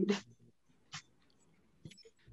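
A voice trails off, then near silence with a faint short click about a second in.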